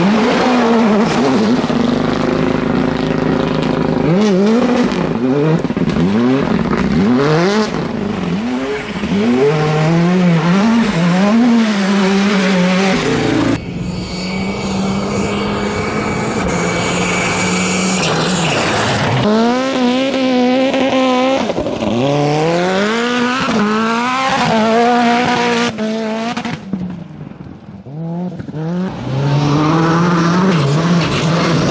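Rally cars driven flat out on gravel, engines revving hard with repeated quick rises and drops in pitch as they shift gears and brake for corners. For a stretch near the middle a single car holds a steady high note as it comes on at constant speed, and the sound briefly drops away before another car arrives near the end.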